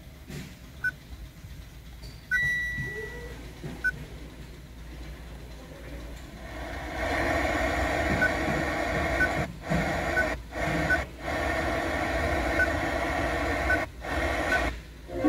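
Touchscreen head unit of a 2019 Mitsubishi ASX giving short single beeps as its buttons and radio presets are pressed, one about every second or so. From about halfway the FM radio plays through the car's speakers as a steady hiss, cutting out briefly several times as new stations are selected.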